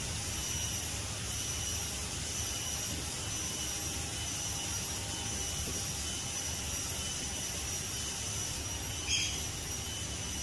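Steady forest ambience: a continuous high-pitched insect drone over a low rumble, with a short chirp about nine seconds in.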